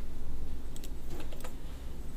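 Several sharp clicks of a computer mouse, two a little under a second in and a few more around a second and a half, over a steady low hum.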